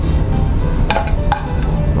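Background music with a steady low bed. A metal spoon clinks twice against a glass serving plate about a second in, each clink ringing briefly.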